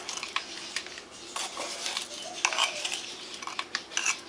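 A plastic measuring spoon scooping baking powder from a can, scraping and clicking against the can's rim in a string of small, irregular clicks and short scrapes.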